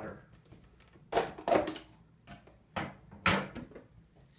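Removable plastic parts of a Cuisinart drip coffee maker being taken out and handled: four short knocks and clunks spread over a few seconds, the loudest near the end.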